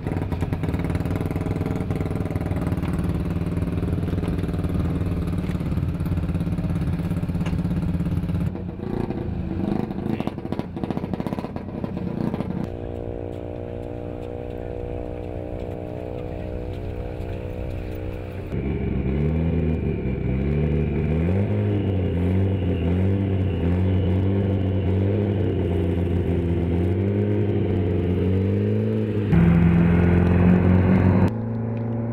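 Vehicle engines running: a steady idle for the first several seconds, a steadier, quieter tone in the middle, then the engine pitch repeatedly rising and falling through the second half, turning louder just before the end.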